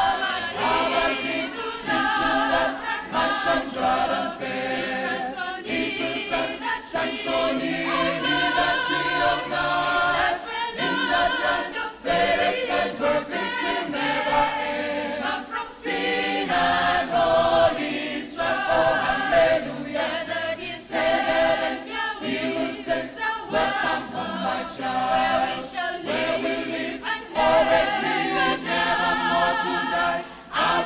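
Mixed choir of men's and women's voices singing a gospel song in harmony, with several vocal parts sounding together.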